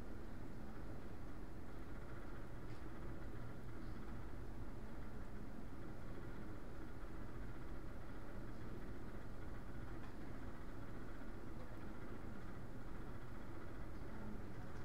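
Steady low hum and hiss of room background noise, with no speech and only a couple of faint ticks.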